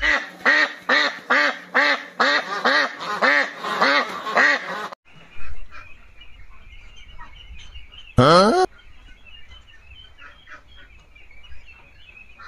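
A rapid run of about a dozen duck quacks, roughly three a second, cut off sharply about five seconds in. Then a shed of ducklings peeping faintly, with one short, loud rising call a little after eight seconds.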